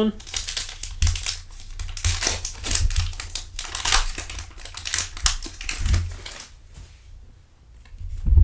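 Trading card pack wrapper being torn open and crinkled by hands, a dense run of crackling that dies down about six and a half seconds in.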